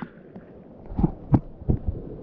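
Muffled sloshing and low knocks of shallow sea water against an action camera held half-submerged at the surface. There are a few dull thumps in the second half.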